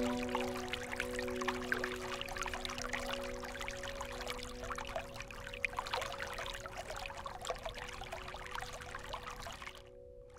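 Water dripping and trickling in a dense, uneven patter, like light rain on a pond. Under it, a sustained chord of soft meditation music slowly dies away, with a brief dropout near the end.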